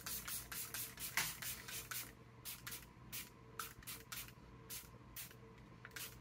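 Fine-mist pump bottle of Jaclyn X Robin All Set setting spray being pumped in many quick short puffs, about three a second, spaced further apart in the second half.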